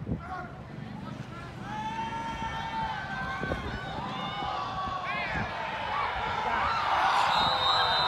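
Football spectators shouting during a play, with long drawn-out yells. The crowd noise swells into cheering over the last couple of seconds as the play goes for a touchdown.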